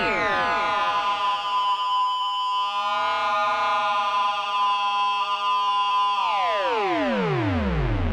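Homemade digital modular synthesizer, an Arduino-read patch panel driving a JavaScript soft synth, sounding several tones at once. The pitch sweeps steeply down at the very start, holds as a steady drone with a low wobble in the middle, then slides down again over the last two seconds as the oscillator knob is turned.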